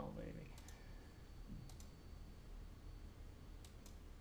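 Faint clicking of a computer mouse, three quick pairs of clicks spread across a few seconds, over quiet room hum.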